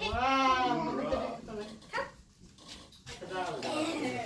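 A long, wavering vocal cry, like a bleat, for about the first second, followed by quieter voices.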